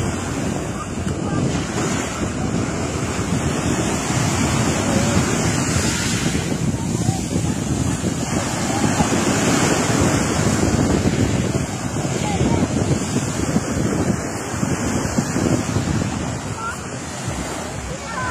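Small waves breaking and washing up a fine pebble beach in a steady, rolling wash, with wind noise on the microphone.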